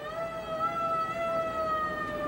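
A siren sounding one long held tone that sags slightly in pitch.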